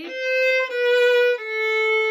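Violin played with the bow: one long sustained note, then a slightly lower note held on to the end.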